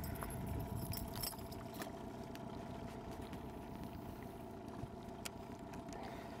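A boat motor running steadily and quietly, a low hum carrying a couple of steady tones, with a few faint clicks as a northern pike is handled at the boat's side.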